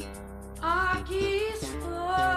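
1980s Brazilian pop song: soft instrumental backing, then a high sung vocal line with vibrato comes in about half a second in.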